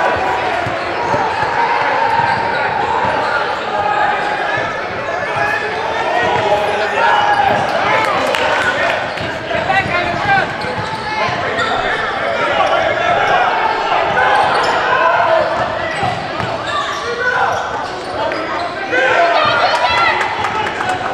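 Basketball bouncing on a hardwood gym floor during a game, with voices and shouts from players and spectators echoing in a large gymnasium.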